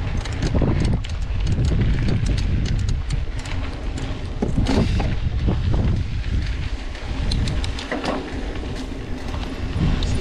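Mountain bike rolling down a dirt trail: wind rumbling on the camera microphone, with tyres on dirt and the bike rattling in quick, irregular clicks and knocks over the bumps.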